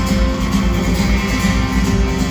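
Live band playing a guitar-led instrumental passage of a country-rock song, with bass and drums under it, amplified through an arena sound system and heard from the stands.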